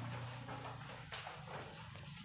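Whiteboard eraser wiping across the board in repeated strokes, the loudest a little past halfway, over a steady low hum.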